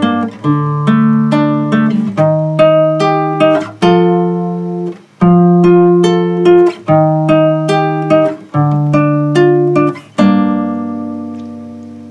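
Nylon-string classical guitar played fingerstyle: arpeggiated chords (G minor, D minor, E-flat, F, F, E-flat, D minor, G minor) picked one string at a time and let ring. The line ends on a G minor chord left ringing, about ten seconds in.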